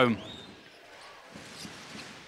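Faint basketball arena sound: an even crowd murmur with a few light ball bounces on the court.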